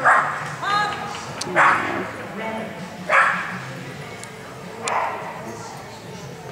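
A small dog barking in sharp single barks, four of them about a second and a half apart, with a short rising yelp just before the first second.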